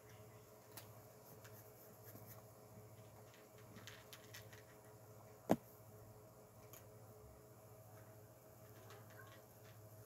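Near silence: a faint steady hum with a few faint ticks, and one sharp click a little past halfway.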